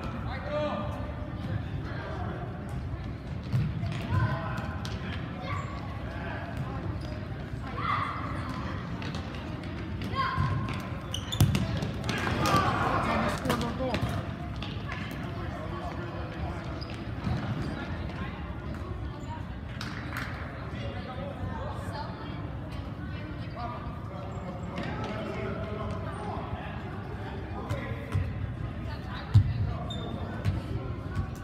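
An indoor soccer ball thumping as it is kicked and bounces on a gymnasium floor, a few sharp knocks among steady shouting from players, coaches and spectators, echoing in the hall. The voices grow louder for a couple of seconds about twelve seconds in.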